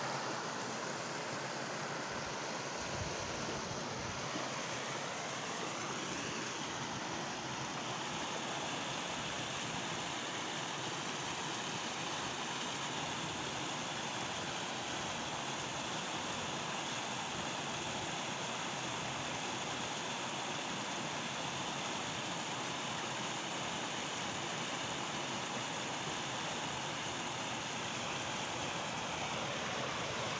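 Water gushing and churning out of a sluice gate into shallow water: a steady rushing noise that runs on without a break.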